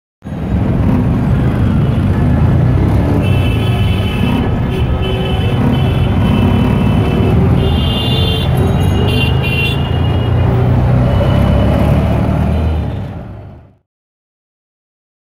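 Busy city street traffic: a steady rumble of vehicles with horns sounding now and then, fading out near the end.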